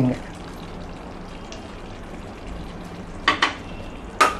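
Chicken gravy simmering in a pan with a steady low sizzle as fresh cream is poured in. Two short sharp sounds come close together about three seconds in.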